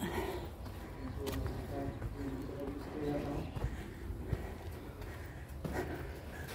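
Faint, indistinct voices in the background, with a few footsteps on gritty rock.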